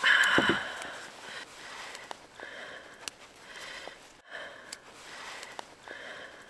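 Small pieces of sports tape being handled between the fingers, with faint clicks and rustles. A louder noisy burst opens the sound, and soft breaths through the nose come and go about every second and a half.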